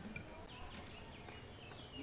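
Birds chirping faintly: two short runs of quick, high, falling chirps over a quiet outdoor background.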